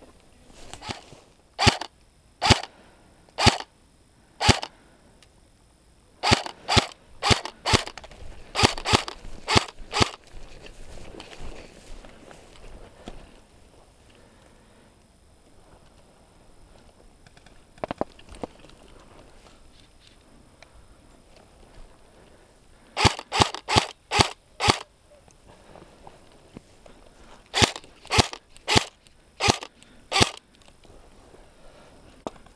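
Airsoft guns firing sharp shots, some singly about a second apart and others in quick clusters of several, with pauses between.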